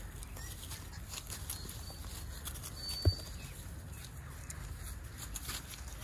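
Sheep grazing, with faint crisp ticks of grass being torn and chewed over a steady low rumble. One short, louder thump comes a little past halfway.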